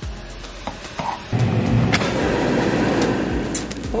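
CRUxGG air fryer running: a steady rushing noise of its fan sets in about a second in, with a few sharp clicks.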